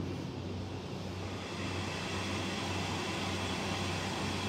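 Steady background room noise: a low, even hum with a faint hiss.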